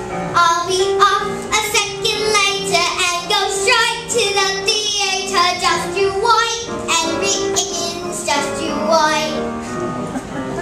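A young girl singing a show tune with instrumental accompaniment.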